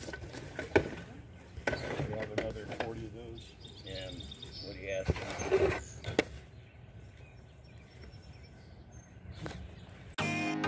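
Plastic blister-pack toy cars on cardboard backing being shuffled by hand in a cardboard box, giving scattered sharp clicks and rustles. Indistinct voices can be heard in the background at times.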